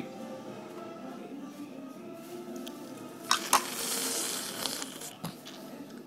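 Two quick clinks of a metal spoon against a ceramic cereal bowl, followed by about a second of hissy slurping as milk is sucked out of a soaked piece of shredded wheat, over faint background music.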